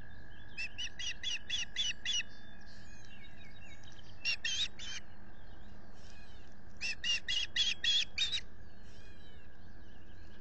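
Osprey at the nest calling in three bursts of short, rapid whistled chirps, several notes to each burst: about a second in, around the middle, and again after about seven seconds, the last burst the loudest.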